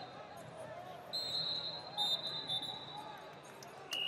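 Wrestling shoes squeaking on the mat as two wrestlers push and shift their feet while tied up: a few short, high-pitched squeals about a second in and again around two seconds in, over the arena's background chatter.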